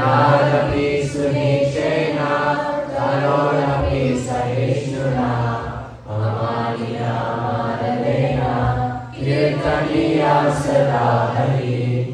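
A group of voices chanting a devotional verse together in unison, led by a young speaker. The chant runs in phrases a few seconds long, with brief pauses for breath between them.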